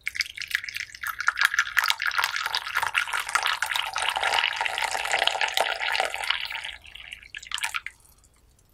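Tea poured in a thin stream into a porcelain cup, splashing and bubbling as the cup fills for about seven seconds, then tapering to a few last drips as the pour stops.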